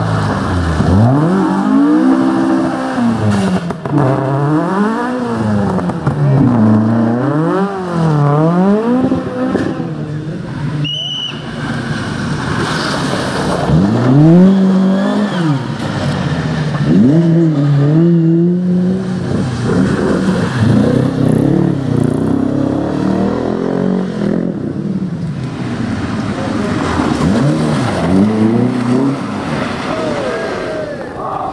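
Rear-wheel-drive rally car engines being driven hard on a stage, the revs climbing and dropping over and over with throttle and gear changes.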